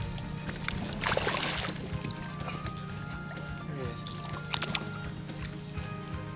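Background music with long held notes. About a second in there is a short splash, a hooked fish thrashing at the surface.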